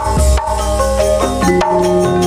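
Javanese gamelan music for a tayub dance: struck metal keys ringing in overlapping steady tones over low drum strokes, played loud through a PA.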